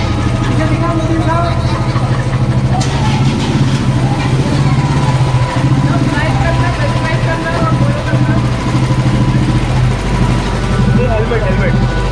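Motorcycle engine idling close by: a steady, low running sound throughout, with people's voices over it.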